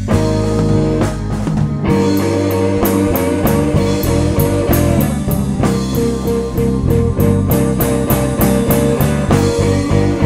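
Live blues band playing an instrumental passage: electric guitar, electric keyboard, bass guitar and drum kit together, with the drums keeping a steady beat of regular strokes from about two seconds in.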